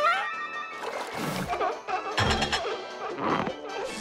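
Cartoon soundtrack: lively music with comic sound effects, including sharp hits about a second and two seconds in.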